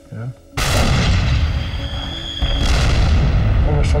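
Battle sound effect of tank gunfire and shell blasts: a sudden loud blast about half a second in with a rumbling tail, then a second blast near three seconds.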